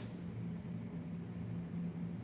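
Steady low hum, a constant background drone with no other distinct events.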